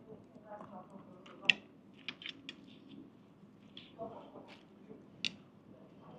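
Chopsticks clicking together and tapping a plate while picking up a dumpling: a handful of short sharp clicks, the loudest about a second and a half in, over faint voices.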